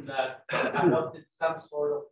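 Speech: a person talking, with short breaks between phrases.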